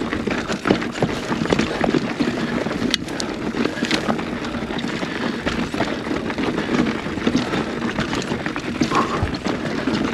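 Full-suspension mountain bike rolling over rocky, gravelly dirt singletrack: a steady rumble and crunch of tyres on dirt and loose stones, with frequent clicks and rattles from stones and the bike.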